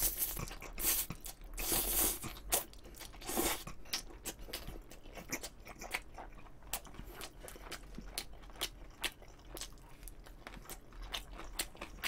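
Close-miked chewing of a mouthful of chewy jjolmyeon noodles: many small wet clicks and smacks, with a few short slurps in the first three seconds or so.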